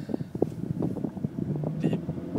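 Low, steady rumble of a car's engine and road noise heard inside the cabin, with a drawn-out hesitation sound from the driver near the end.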